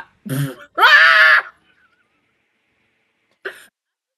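A woman laughing: a short low chuckle, then a loud, high-pitched squeal of laughter about a second in that soon stops.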